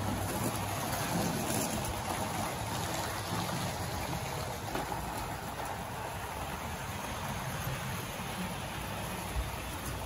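Wrenn OO-gauge steam locomotive hauling Pullman coaches over Tri-ang Super 4 track, giving a steady, even running noise of wheels on rail and motor. It eases off slightly after a few seconds, with one small click near the end.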